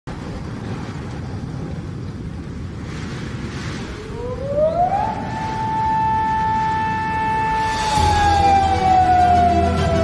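Intro sound effect for an old-film countdown: a low noisy crackle, then a single pure tone that glides up about four seconds in, holds, and slides slowly down. Theme music with a bass line comes in about eight seconds in.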